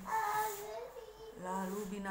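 A woman's voice in an expressive storytelling delivery: a drawn-out, sing-song vocal sound in the first second, then speech resuming near the end.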